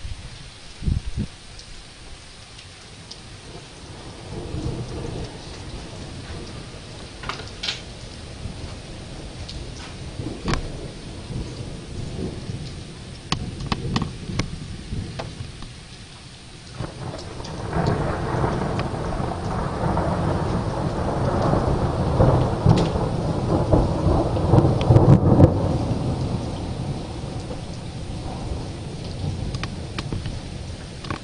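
Steady rain with drops ticking close by, and thunder: a low rumble a few seconds in, then a long roll of thunder that builds from a little past halfway, is loudest near the end and fades away.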